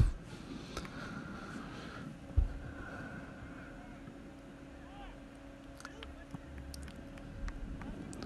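Faint open-air ambience of a floodlit amateur football match: distant players' shouts over a steady low hum, with a single dull thump about two and a half seconds in.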